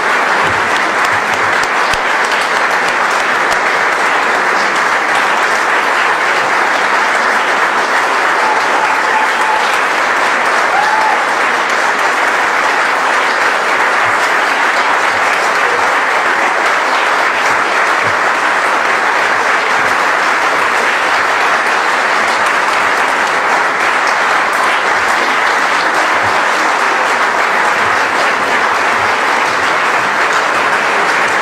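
Audience applauding, a steady, unbroken round of clapping that holds at the same level throughout.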